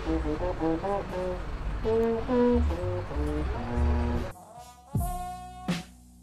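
A brass baritone horn played live, a short phrase of held notes and changes of pitch. About four seconds in it cuts to a backing music track with a beat of sharp hits.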